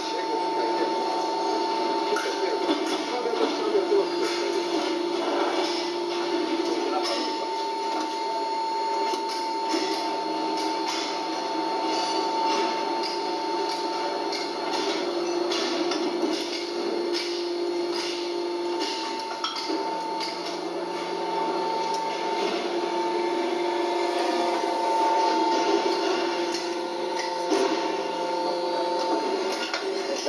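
EX-5 stator dismantler running with a steady whine, joined by a lower tone that comes and goes every few seconds. Many small clicks and knocks sound over it as copper windings are pulled out of scrap electric motor stators.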